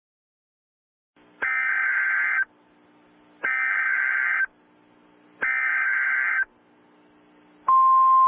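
Emergency Alert System broadcast tones: three one-second bursts of data tones (the SAME header that encodes the alert), a second apart, over a faint low hum. Near the end the steady attention signal tone begins.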